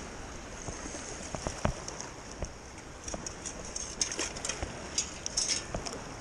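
Shallow surf water sloshing and splashing around a wader's legs, with a few light knocks along the way.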